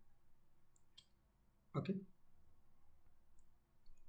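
Faint computer mouse clicks: two close together about a second in and two more near the end.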